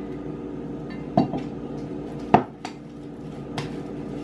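A spoon knocking and clinking against a mixing bowl while stirring sticky cookie batter: a few sharp, separate clinks, the loudest about halfway through.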